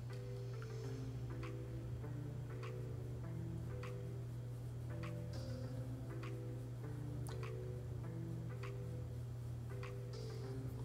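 Soft background music: a simple melody of short notes over a steady low tone, with light ticks scattered through it.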